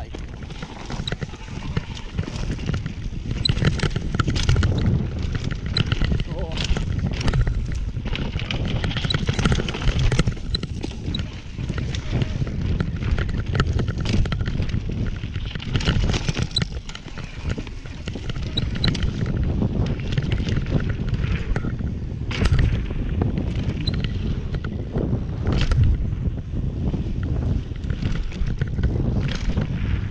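Mountain bike ridden fast down a dirt trail: tyres running over dirt and roots, with frequent rattles and knocks from the chain and frame over bumps, over a steady rumble of wind on the microphone.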